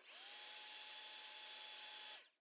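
Hand-held hot-air dryer running, a faint steady whir with a motor whine that rises in pitch as it spins up, then holds steady. It is drying a wet watercolour layer so that the next layer can be painted.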